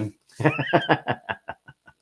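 A man laughing: a string of short breathy bursts that grow fainter and further apart over about a second and a half.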